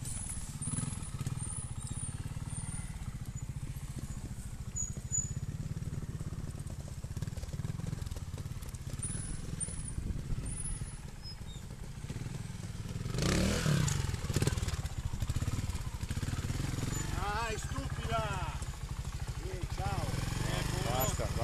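Single-cylinder trials motorcycle engine idling close by, with a brief rev about thirteen seconds in. Voices are heard near the end.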